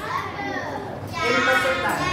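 Children's voices answering together in a classroom: a held, sing-song chorus of the whole class that swells from about a second in.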